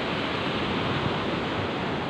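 Small waves washing in over a sandy beach: a steady, even hiss of surf.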